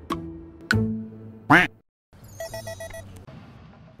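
Comic sound effects edited into a TV show: a couple of sharp stings, then a loud short cry with a pitch that swoops up and down about one and a half seconds in, a moment of dead silence, and a quick run of about five electronic beeps.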